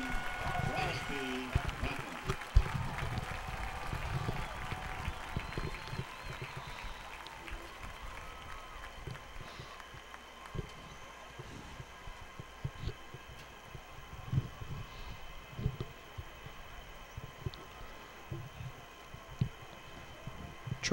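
Faint crowd noise from the stands, with distant voices and scattered low thumps.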